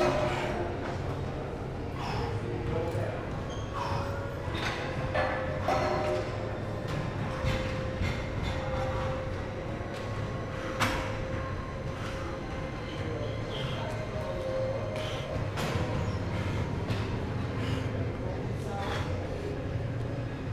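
Gym background noise: a steady low hum with indistinct distant voices and a few scattered sharp clicks or knocks.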